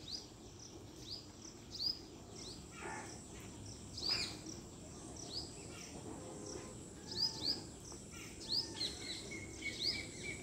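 Outdoor ambience: a steady high insect drone, typical of crickets, with short repeated bird chirps coming irregularly, one or two a second. A couple of faint knocks about three and four seconds in.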